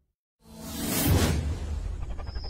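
A whoosh sound effect from an animated title intro. After a short silence it swells in about half a second in, peaks around a second in and fades, over the deep bass of the intro music.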